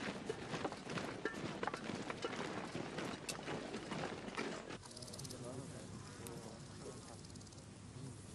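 Marching troops' boots tramping on a dirt road, many overlapping footfalls with indistinct voices. About five seconds in it cuts off sharply to quieter night ambience with a steady high insect buzz, like crickets.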